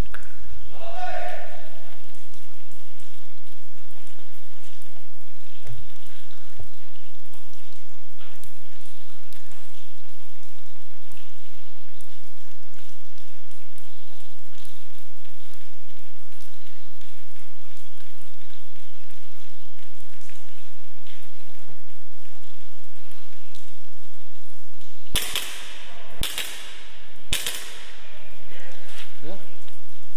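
Airsoft gunfire: three single loud, sharp shots about a second apart near the end, over a steady hiss.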